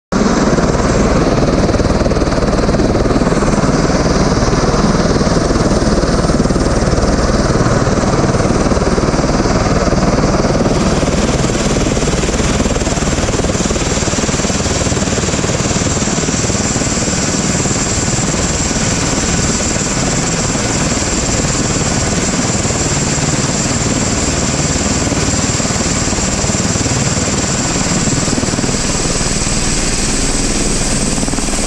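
Helicopter running at close range on the ground, its rotor turning: a loud, steady rotor and engine noise with a thin high whine.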